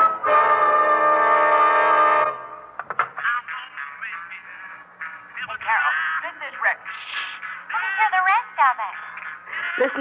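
A brass section on a jazz record holds a loud chord for about two seconds and then cuts off. After it comes quieter music with wavering, sliding notes.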